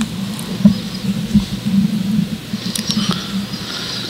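Scratchy rustling and a few light knocks of something being handled close to the desk microphone, loudest about a second in.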